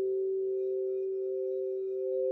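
An 8-inch frosted crystal singing bowl kept sounding with a mallet at its rim: one strong steady tone, with a fainter, slightly higher tone above it that pulses slowly.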